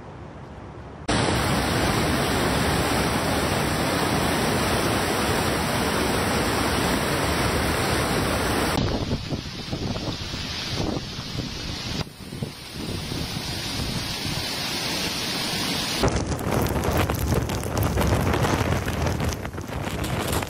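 Typhoon wind and rain noise, heavy wind on the microphone, in several clips that change abruptly. In the last few seconds the wind mixes with rough surf breaking over rocks.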